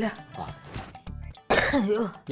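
An older woman coughing and clearing her throat, with a sudden harsh cough about one and a half seconds in that trails off into a falling voiced sound.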